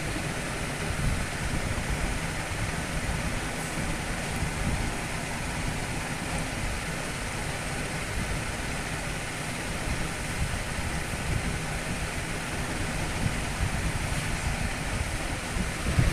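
Steady, even background room noise with no distinct sounds in it.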